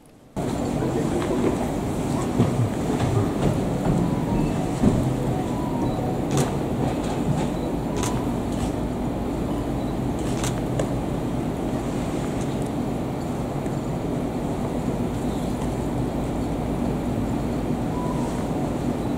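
Steady low room noise of a large hall, with a few scattered sharp clicks.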